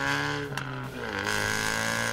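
Exhaust note of a 2015 Mustang EcoBoost's 2.3-litre turbocharged four-cylinder, breathing through an uncatted Borla 3-inch downpipe and Borla ATAK cat-back, heard at the tailpipe while driving; the speaker calls it very loud, a raw turbo four-cylinder sound. The note climbs slightly, breaks briefly with a click about half a second in, then settles to a lower, steady drone, with a rushing hiss over it.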